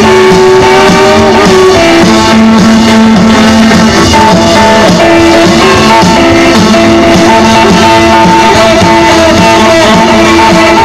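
Live rockabilly band playing an instrumental passage: hollow-body electric guitar and slapped-style upright bass with a steady beat, and a lead line of held notes that change every second or two.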